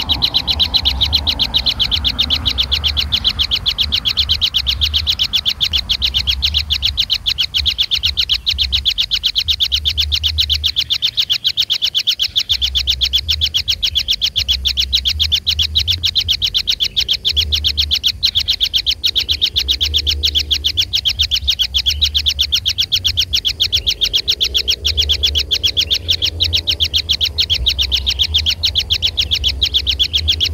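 Kingfisher nestlings calling nonstop in a rapid, high, steady chirping trill, with a low intermittent rumble underneath.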